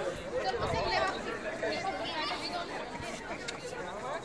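Indistinct chatter of several people talking at once, with no clear words, going on steadily.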